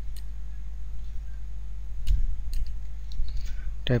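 Computer keyboard keys clicking as a command is typed: a few scattered, irregular keystrokes over a steady low hum.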